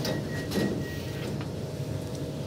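Metro train carriage in motion, heard from inside: a steady low rumble with a faint steady whine coming in about half a second in.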